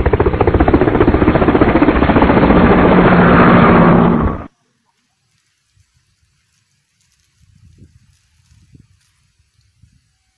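A loud, rapidly pulsing mechanical drone, like a motor, that stops abruptly about four and a half seconds in, followed by faint low knocks and rustles.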